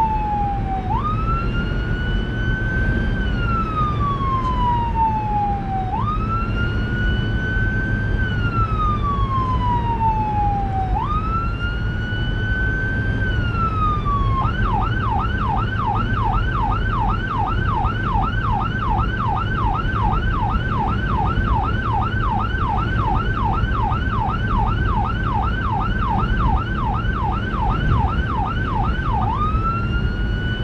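Whelen 295SL100 electronic siren through dual 100-watt speakers, sounding a wail that climbs and falls about every five seconds, then switching about halfway through to a fast yelp of roughly three sweeps a second, and back to the wail near the end. Steady road and engine noise from the responding vehicle runs underneath.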